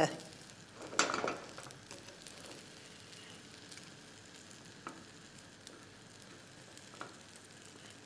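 An egg frying in oil in a small square non-stick pan on a gas flame, with a quiet steady sizzle. A fork works the egg and taps the pan now and then, with faint clicks late on. There is a brief louder sound about a second in.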